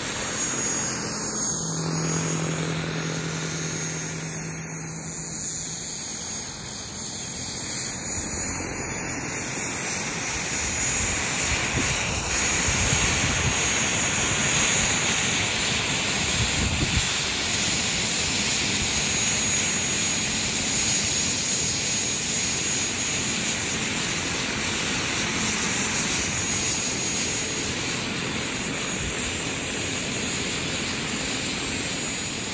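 Turbine-powered radio-controlled scale helicopter flying in to land: a steady high turbine whine over the noise of the rotor blades, growing louder about twelve seconds in as it comes close.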